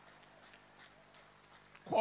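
Quiet hall ambience with a low hum and faint, scattered ticks. Near the end, a man's voice begins a word with a falling pitch.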